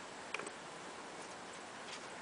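A few short, sharp clicks over a faint, steady outdoor hiss: a doubled click about a third of a second in and a fainter one near the end.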